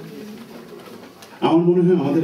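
A man's voice through a microphone pauses, leaving faint room noise. About one and a half seconds in it comes back with a long, steady, level-pitched hesitation sound.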